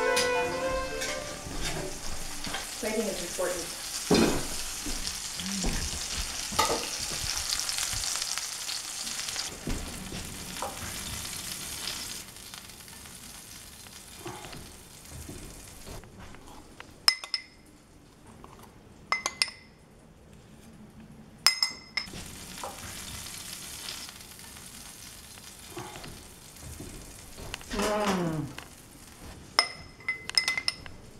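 Food sizzling in a hot frying pan, a steady hiss that fades away about twelve seconds in. Later come a few sharp clinks of dishes and utensils as plates are handled.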